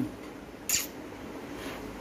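Quiet room noise, broken by one short, soft hiss about two-thirds of a second in.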